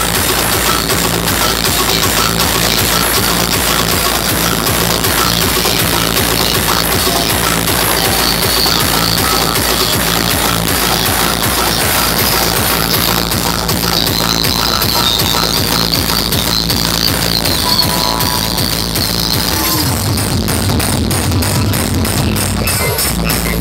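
Loud electronic dance music with a steady beat played through a DJ sound system; the bass changes about two seconds before the end.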